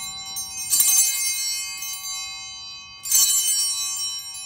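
Altar bells (Sanctus bells) rung at the elevation of the consecrated host. The bells are struck twice, about a second in and again near the end, and each peal rings on and fades slowly.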